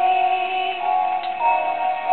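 A woman's solo voice holding the last long sung note of the ballad over its backing music, which carries on into the closing bars.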